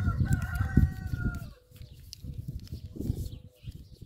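A rooster crowing once: one long call that ends about a second and a half in.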